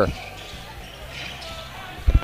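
Quiet gym sound of a high school basketball game in play: low crowd murmur and court noise.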